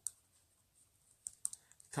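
Pen writing on paper on a clipboard: a few faint ticks and scratches, bunched in the second half, with quiet between.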